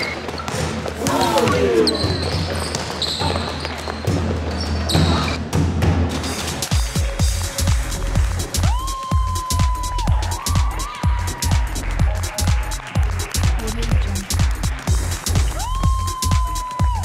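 Basketball game sounds, the ball bouncing on a gym floor, under background music. About seven seconds in, these give way to music with a steady beat about twice a second and a held synth melody.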